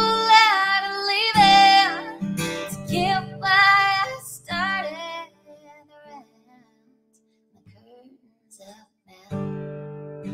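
A woman singing with a strummed acoustic guitar in a live solo performance. About five seconds in, voice and guitar stop for a few seconds of near silence, then the guitar strumming starts again near the end.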